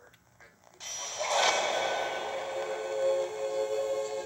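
Audio of a surround-sound logo from a VHS tape opening. It comes in suddenly about a second in with a rising swell, then settles into a held chord of several steady tones.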